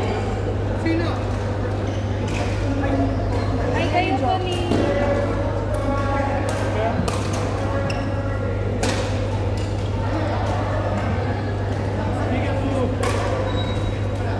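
Badminton rackets striking shuttlecocks: sharp pops at irregular intervals, a few strikes a few seconds apart, over players' voices and a steady low hum in a large hall.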